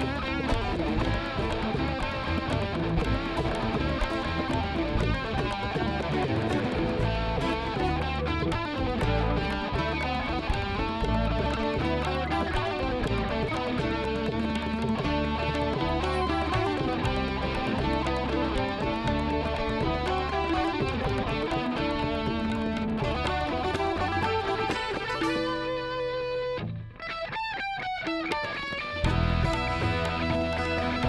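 Indian–jazz fusion band playing an instrumental passage led by electric guitar, over bass and percussion. Near the end the bass and drums drop out for a few seconds, leaving the guitar alone with sliding runs, and the full band comes back in just before the end.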